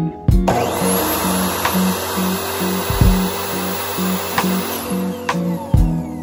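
Electric miter saw starting, running and cutting through thin wood strips for about five seconds, its motor noise starting sharply just after the start and cutting off near the end, over background guitar music.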